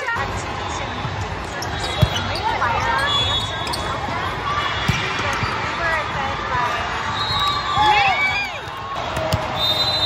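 Din of a large hall full of volleyball courts: players' voices calling out over steady crowd noise, with sharp ball smacks about two seconds and five seconds in.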